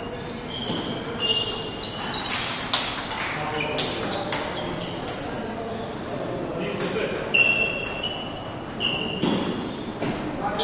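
Table tennis ball being struck back and forth by paddles and bouncing on the table, a string of sharp ringing clicks in two rallies with a short pause between them, over voices in the hall.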